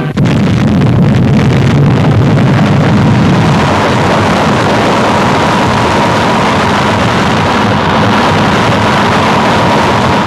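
Deep, loud rumble of the first hydrogen bomb explosion, starting abruptly just after the countdown reaches one and carrying on steadily. A faint steady high tone joins about four seconds in.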